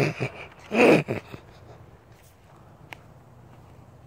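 A man's short, loud, breathy vocal burst, with his hand held over his mouth, about a second in, with a smaller one just after; then faint background and a single small click near three seconds.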